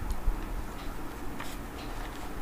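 A few isolated clicks, one near the start and one or two about a second and a half in, over a low steady hum.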